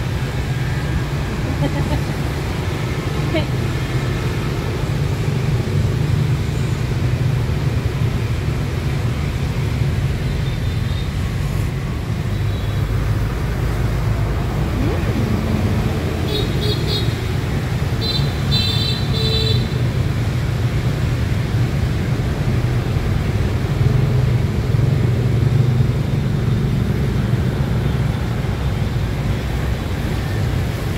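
Steady low rumble of street traffic, with background voices. A few short, high-pitched beeps in two quick groups just past the middle.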